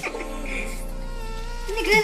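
Background music with steady held tones and a deep bass kick that falls in pitch, striking at the start and again at the end; a short vocal sound comes in near the end.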